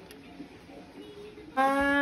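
Quiet room sound, then near the end a woman starts singing, holding a long first note of a little birthday tune.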